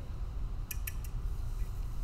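Two small, sharp clicks in quick succession, under a quarter of a second apart, about a third of the way in, from handling a fencing foil and a small tip screwdriver while checking the tip screws. A steady low hum underneath.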